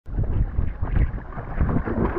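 Wind buffeting the microphone in irregular low rumbling gusts, over water splashing around a person in the lake beside an inflatable raft and kayak.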